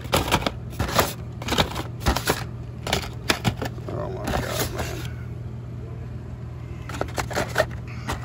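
Blister-carded Hot Wheels die-cast cars being flipped and pushed along store pegs: quick clicks and rattles of the cardboard-and-plastic packs knocking together. The clicks pause about five seconds in and start again near the end, over a steady low hum.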